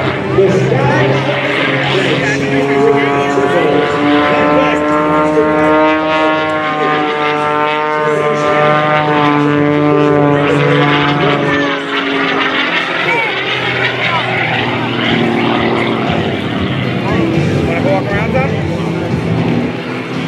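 Extra 330SC aerobatic plane's six-cylinder Lycoming piston engine and propeller droning overhead. The drone is steady, with its pitch drifting slightly up and down as the plane manoeuvres.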